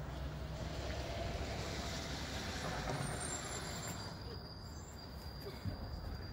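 Steady rumbling and hissing of a chairlift ride, the chair running along the haul rope toward a lift tower, easing off after about four seconds.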